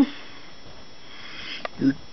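A pause in a man's talk: a low, steady hiss, a small click about one and a half seconds in, then the single short word "you" near the end.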